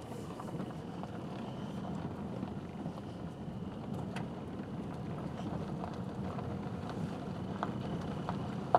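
A car driving on a dirt road, heard from inside the cabin: a steady low rumble of engine and tyres, with scattered small clicks and knocks.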